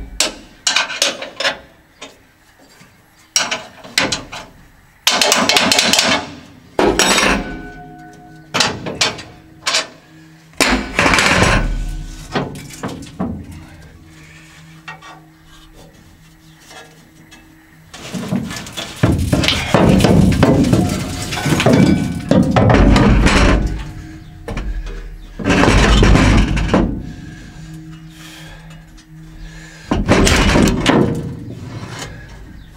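Steel concave grates being worked loose and slid out of a combine harvester's threshing section: metal knocks and clanks, with longer stretches of metal scraping against metal, the longest from about 18 to 24 seconds in.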